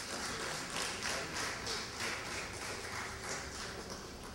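Light, scattered applause from a small audience, a few people clapping in quick, uneven claps.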